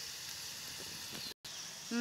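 Onions and bay leaf frying in oil in a steel wok, a faint steady sizzle. The sound cuts out completely for an instant about one and a half seconds in.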